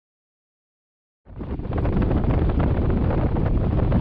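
Silent for just over a second, then wind buffeting the microphone of a camera mounted low by the front wheel of a Nissan Frontier pickup, mixed with the tyres rolling and crackling over a dry dirt road as the truck drives along.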